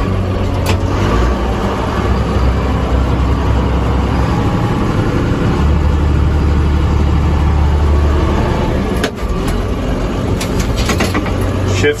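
JCB Fastrac 3185's six-cylinder diesel engine running steadily while the tractor drives in reverse, heard from inside the cab. The engine note grows deeper and stronger for a few seconds in the middle, and a few short clicks or knocks come near the end.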